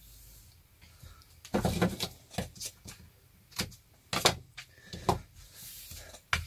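Hands handling pine strips carrying double-sided tape on a tabletop: a series of short scrapes and taps, about half a dozen over a few seconds, as the taped strips are trimmed, shifted and pressed down.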